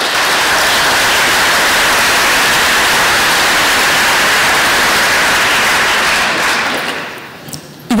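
An audience applauding steadily, dying away about seven seconds in.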